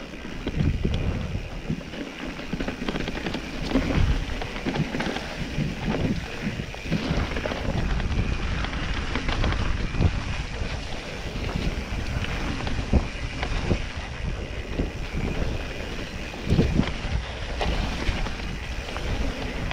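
Mountain bike rolling down a dirt trail: tyre noise on dirt and rocks with frequent knocks and rattles from the bike over bumps, and wind on the camera microphone.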